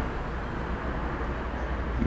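Steady low background rumble with no distinct events, the kind of continuous outdoor noise a vehicle or distant traffic makes.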